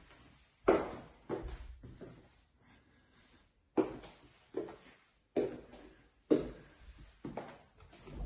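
Footsteps on a hard indoor floor, a single step about every second with a pause of over a second near the middle, each a short knock in an echoing hallway.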